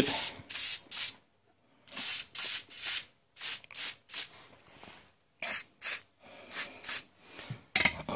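Aerosol can of Tectyl anticorrosion fluid hissing through its red extension tube in a string of about a dozen short squirts with brief gaps, as the fluid is worked onto the screw threads in a wheel-arch liner.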